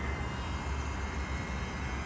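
Wind on the microphone, a steady low rumble, with a faint steady high tone above it.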